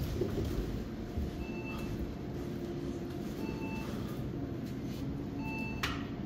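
A short electronic beep repeating about every two seconds over a steady background hum, with a sharp click just before the end.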